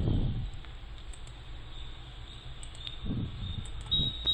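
Quiet room tone from a voice-recording microphone: a steady low hum under faint hiss, with a soft brief rustle or breath about three seconds in.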